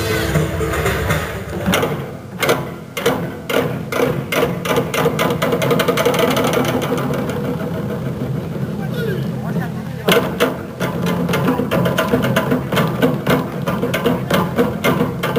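Korean traditional drum ensemble playing large barrel drums, a dense run of hard strikes. The beats thin out in the middle and come thick and fast again after about ten seconds.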